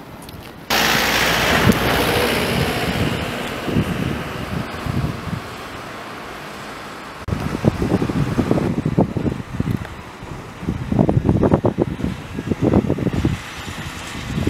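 Outdoor wind buffeting the camera microphone. A loud rushing hiss comes in suddenly about a second in and slowly eases off. From about halfway through, irregular low rumbling gusts take over.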